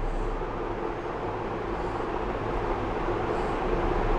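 Steady background hum and hiss of room noise, with a low even drone and no distinct event.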